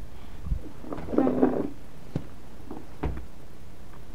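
Handling noise from a handheld camera being carried about: low rumble and rustling, with a few light knocks. A short hummed voice sound comes a little over a second in.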